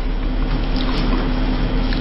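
Steady rushing noise with a low hum underneath.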